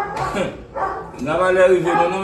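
A man's voice speaking in a raised tone, in drawn-out, rising and falling phrases that the speech recogniser did not catch as words.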